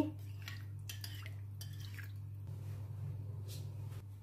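A metal spoon stirring a bowl of water and oil, with a few light clinks and scrapes against the ceramic bowl, over a steady low hum.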